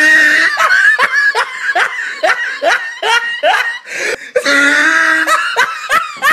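A person laughing loudly. It opens with a drawn-out cackle, then runs into a series of short falling "ha" bursts, about two to three a second, and stretches out again near the end.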